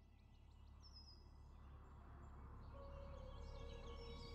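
Faint outdoor ambience with a low steady rumble and a few short, high bird chirps. Soft music with long held notes fades in about three seconds in.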